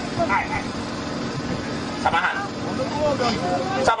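Men's voices talking near a stage microphone over steady background noise.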